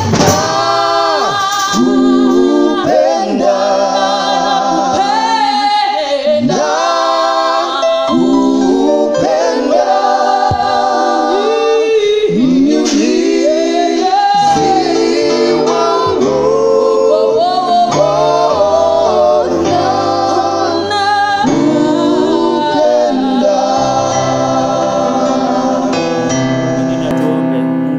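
Gospel worship song sung by a church praise and worship team, the voices gliding through a slow melody, with sustained low notes joining the singing about halfway through.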